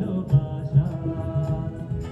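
Live band music from a stage performance of a Bengali song: a sustained melodic line over a steady low drum beat.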